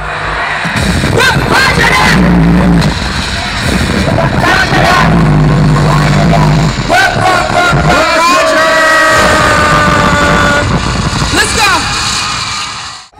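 Live hip-hop concert sound: a bass-heavy beat through the PA with voices and crowd yelling over it. About seven seconds in the bass drops out and a steady held note takes over for a couple of seconds.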